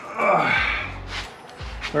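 Background music under a man's breathy grunt of effort about a quarter second in, as the plastic intake manifold is worked loose and lifted out of the engine bay, with a couple of brief knocks after it.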